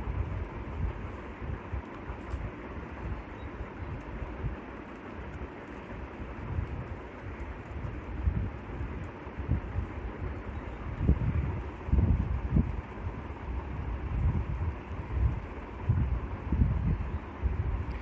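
Steady background rumble and hiss picked up by the microphone, heaviest in the low end, with irregular low thumps like air buffeting the mic.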